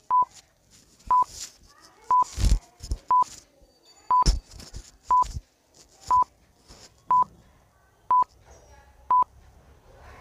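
Countdown timer sound effect: ten short, high, steady beeps, one each second, with scattered faint clicks and a couple of low thumps between them.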